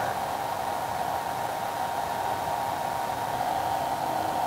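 A steady fan whir with a thin, faint whine running through it.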